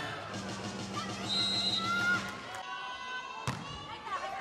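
Volleyball arena crowd cheering with a dense wash of voices, which drops off abruptly about two and a half seconds in. Near the end a volleyball is struck once, a sharp smack.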